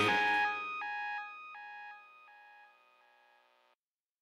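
Closing bars of a hip hop track fading out: the bass and beat drop away at once, leaving a melody of single notes, about three a second, that dies away by about halfway through, then silence.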